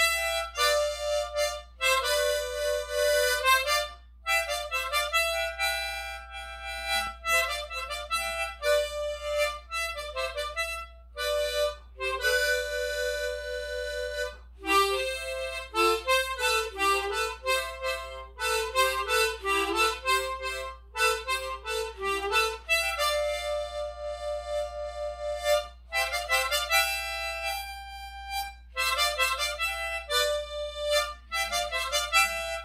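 Solo harmonica playing a Hindi film song melody: sustained notes alternating with quicker runs, with a stretch of lower, faster notes about halfway through.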